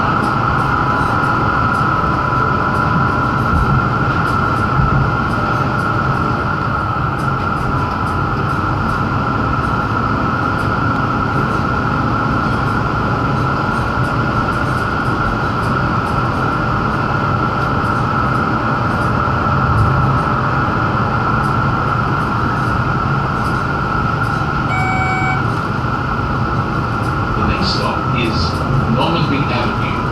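Tram running along the street, heard from inside the passenger cabin: a steady rumble of wheels and running gear with a constant mid-pitched hum over it. A short electronic beep sounds once, late on.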